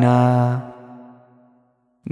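Male nasheed singer holding the last note of a sung line over a low sustained drone, the sound fading out with reverb and dying away into silence about a second and a half in.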